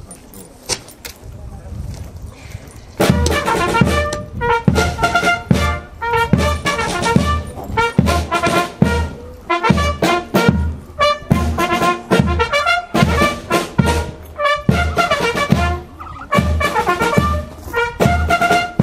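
A brass band starts playing about three seconds in: trumpets and trombones carrying a tune over a steady beat.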